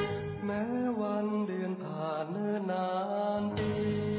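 Recorded Thai luk thung song: a male voice sings long, bending notes. The bass and low accompaniment drop out for about two seconds in the middle, and the full guitar-backed band comes back in just before the end.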